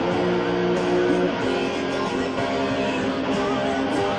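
Electric guitar played with a pick: a line of held, ringing notes that change about once a second.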